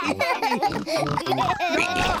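Several cartoon pig voices, a deep adult one and children's, laughing together with pig snorts.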